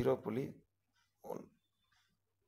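A person's voice: a short spoken utterance at the start and another brief voiced sound just over a second in, then quiet.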